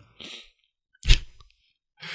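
A soft breath, then a single sharp click with a low thump about a second in, close to the microphone: a mouth or lip click or a light knock by the hand near the mic.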